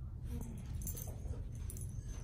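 A small dog whimpering faintly: a few short, soft whines over a steady low room hum.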